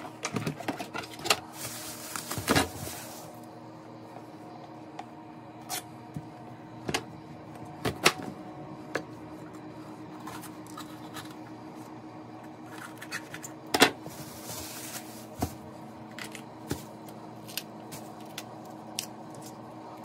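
Chef's knife knocking on a plastic cutting board as vegetables are cleared and a green bell pepper is cut: a quick run of knocks in the first few seconds, then single knocks every second or two, over a steady low hum.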